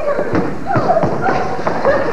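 Indistinct voices on a stage, with several knocks and thumps in among them.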